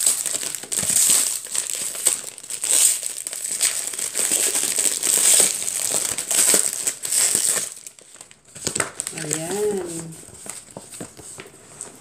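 Packaging crinkling and rustling in irregular bursts as a parcel is unwrapped by hand, easing off after about eight seconds. A brief hum of a voice comes about nine seconds in.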